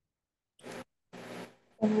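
Dead silence on the video-call line, then two short bursts of scratchy noise on a student's microphone, about half a second and a second in. A girl begins speaking near the end.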